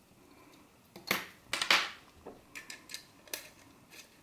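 Small metallic clicks and scrapes of SMA coax connectors being unscrewed and the cables handled. The loudest bursts come a little over a second in and just past halfway, with a few sharp clicks after.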